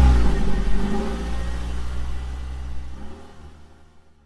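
Car engine revving in a few rising and falling sweeps, used as an outro sound effect. It grows steadily fainter and dies away at the end.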